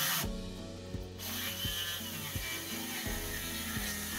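18V cordless 165 mm circular saw labouring in a cut with a dull blade, the blade binding and the motor stalling, with a series of irregular clicks. The sagging floor pinches the blade and the 18V saw lacks the power to push through.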